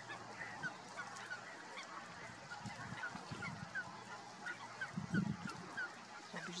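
Mute swan on its nest making soft, low calls while tending its eggs, with one louder call about five seconds in. From about halfway through, another bird gives a series of short, high, falling notes, about two a second.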